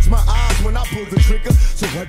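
Hip hop music: a rapped vocal over a beat with a heavy, steady bass.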